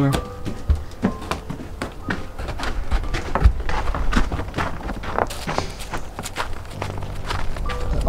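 Bare feet stepping through shallow snow: irregular soft crunching steps, several a second, over background music.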